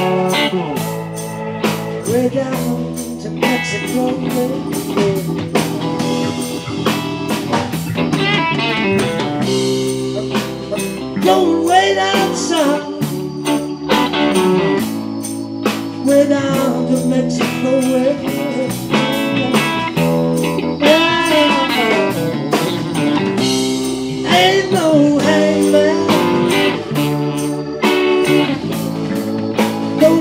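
Live blues-rock band playing: a Stratocaster-style electric guitar takes lead lines with bent, sliding notes over bass guitar, keyboard and a drum kit whose cymbals keep an even beat.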